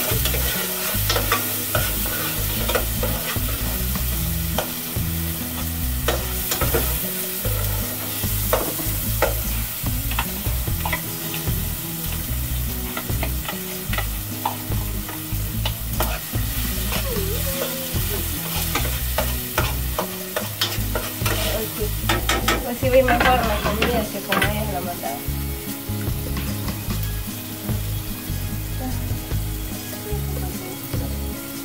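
A metal spoon stirring and scraping in an aluminium cooking pot on a stove, with scattered clinks of utensil on metal, over a steady sizzle of food cooking.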